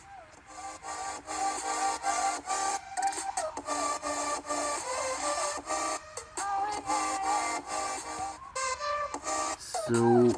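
Electronic intro music from a Panzoid intro template playing through laptop speakers, with a steady beat under a synth melody. It comes in about half a second in.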